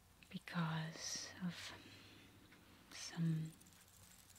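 A woman speaking in a soft whisper close to the microphones: a phrase about half a second in and a shorter one near three seconds in.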